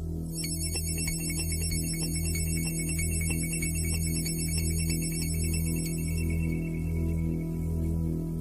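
Minimal electronic music from a 1980s home recording on a four-track cassette recorder. A low pulse throbs about once every three-quarters of a second over a steady low drone. A fast, high ticking pattern comes in about half a second in and drops out near the end.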